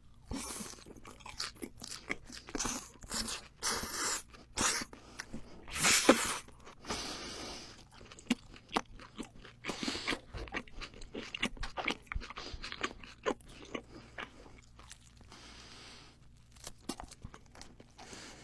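Close-miked chewing of a mouthful of dry-cured ham and melon: many sharp wet clicks from the mouth, with a few louder crunching bursts, the loudest about six seconds in.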